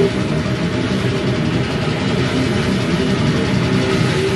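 Brutal death metal band playing live at full volume: heavily distorted, down-tuned electric guitars and drums merge into one dense, low wall of sound.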